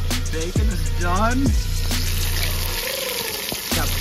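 Background music with a steady deep bass that slides down in pitch several times, and a wavering melodic line above it.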